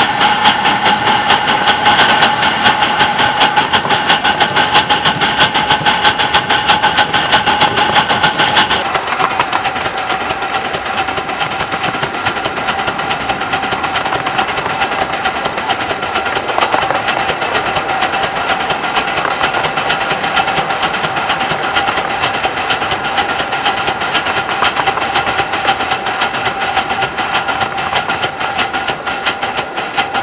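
Steam locomotive running along the track, heard close to its wheels and cylinders: a fast, even clatter under hissing steam. The hiss is strongest for about the first nine seconds, then eases off and leaves the running clatter.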